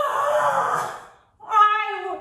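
A high voice sings or squeals a long held note of about a second, then breaks off, and a second, slightly falling note follows near the end.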